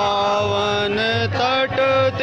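A man singing a devotional chant into a microphone over a PA, with long held notes and slides, over a steady low beat.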